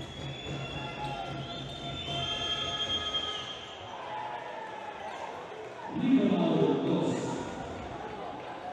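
Live basketball court sound: a ball dribbled on a hardwood floor and sneakers squeaking, with voices echoing in the arena. A louder swell of voices comes about six seconds in.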